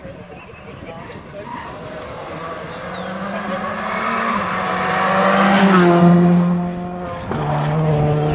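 Rally car's engine approaching at speed, growing steadily louder to a peak about six seconds in as it passes, its pitch stepping down there, then a fresh steady note near the end as it powers away.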